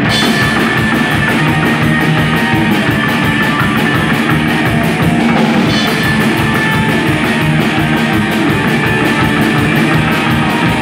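A live rock band playing an instrumental passage on upright double bass, electric guitar and drum kit, with a fast steady cymbal beat and no singing.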